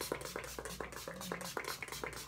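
Pump-spray bottle of makeup setting spray being pumped rapidly, a quick run of short spritzes about six a second.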